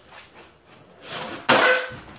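Skateboard landing a 180 on a concrete floor: a short scuff, then a sharp clack of deck and wheels hitting the concrete about a second and a half in, ringing briefly.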